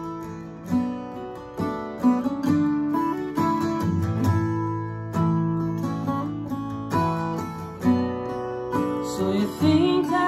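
Acoustic guitar strummed in steady chords, the instrumental opening of a song, with a voice starting to sing near the end.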